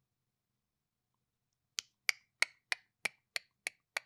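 Near silence, then, a little under halfway in, a run of evenly spaced sharp clicks or snaps, about three a second.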